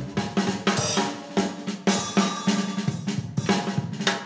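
Background music with a steady drum-kit beat: snare, bass drum and cymbals.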